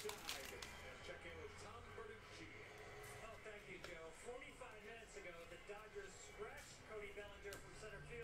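Very faint background voices over quiet room tone, with a few soft ticks of trading cards being handled and thumbed through.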